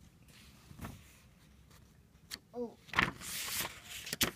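Paper pages of a hardcover picture book being turned: a couple of soft taps, then a loud rustle and flap of the page about three seconds in. A brief hum-like voice sound comes just before the rustle.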